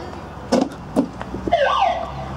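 Two sharp knocks, then a short wavering siren wail near the end from the summit siren of a climbing wall as its button is pressed.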